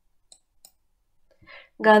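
Two faint, short clicks about a third of a second apart, typical of a computer mouse being clicked while a highlight mark is drawn on screen. Near the end a breath and then a voice speaking Malayalam come in.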